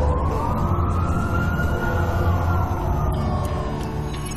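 An emergency vehicle siren wailing in one slow rise and fall of pitch, heard through city street ambience, over a low steady hum.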